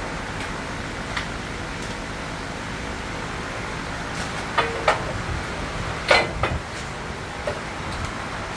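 Sharp metal clanks and knocks from tools and parts in a car's engine bay during engine removal. There are a few spaced-out clanks, the loudest about halfway through, and one rings briefly, over steady background noise.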